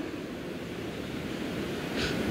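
Steady, even rushing hiss of background noise in a hall, slowly growing louder toward the end.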